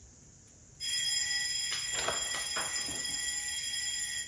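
An alarm clock ringing, starting about a second in and cutting off at the very end as it is switched off.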